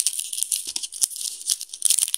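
Plastic chocolate-bar wrappers crinkling as they are picked up and handled, a dense crackle of small clicks.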